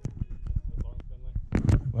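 Irregular sharp crackles and knocks over a low rumble, typical of wind buffeting and handling noise on an outdoor microphone, growing louder near the end. A man's shout begins at the very end.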